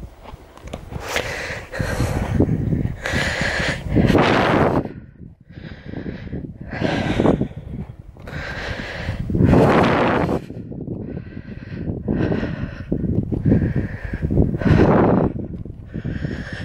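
A walker's heavy breathing close to the microphone, a noisy breath about once a second, out of breath from a steep uphill climb.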